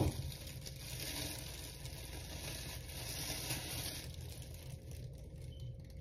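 A short knock, then a plastic shopping bag worn over a hand as a makeshift glove rustling and crinkling against the hair for about four seconds, growing quieter after that.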